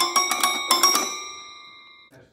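An 18-key toy piano played with one hand: a quick run of notes in the first second, then the last note ringing and dying away.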